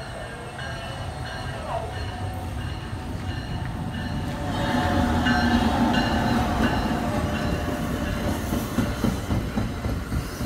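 NJ Transit ALP-46 electric locomotive pulling a multilevel coach set through the station: a steady electric hum and rumble of wheels on rail, growing louder about five seconds in as the locomotive draws level and the coaches roll past.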